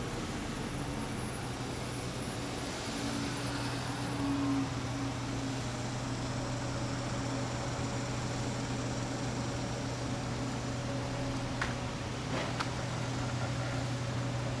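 Motorcycle engine idling steadily, a low even hum, with a few light clicks near the end.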